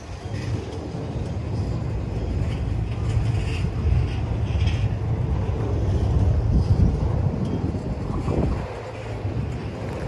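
Double-stack intermodal freight train rolling past, its container well cars making a steady low rumble of wheels on rail, with a dip in loudness near the end.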